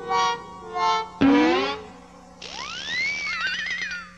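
A cartoon character's voice giving a few short laughs and a rising cry, then a cartoon magic sound effect: a hiss with a whistling tone that rises, falls and wobbles.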